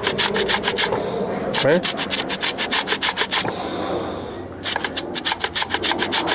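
Orange peel being grated on a stainless steel box grater: quick, rhythmic rasping strokes, several a second, in runs with a pause of about a second just past the middle.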